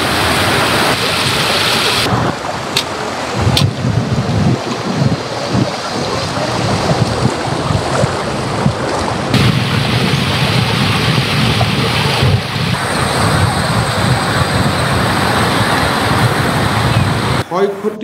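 Fast-flowing floodwater rushing and churning as it pours over a road embankment: a loud, steady roar of water. It changes character abruptly three times, about two, nine and twelve seconds in.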